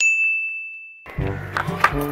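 A single bright ding, a transition sound effect on a title card, ringing on one high note and fading away over about a second. Background music comes in just after it.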